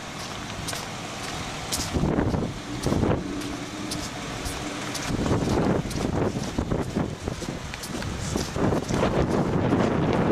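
A car moving slowly along the road, with wind buffeting the microphone.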